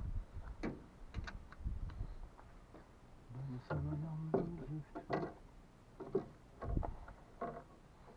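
Scattered light clicks and knocks of fishing tackle and gear being handled at an open vehicle door, with a short stretch of a low voice about halfway through.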